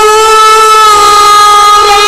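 A loud sustained drone note held at one steady pitch, rich in overtones, in the accompaniment of a naat recital.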